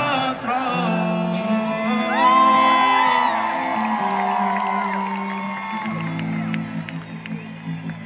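Live reggaeton music over a stadium sound system, with held melodic lines over a steady bass and crowd whoops, getting gradually quieter toward the end.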